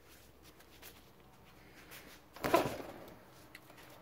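One quick hand pull on a knotted rope wrapped around the flywheel of a 1.2 hp Johnson Colt outboard, about two and a half seconds in, briefly spinning the single-cylinder engine over against a compression gauge before the rope slips off. Before the pull only faint handling noise.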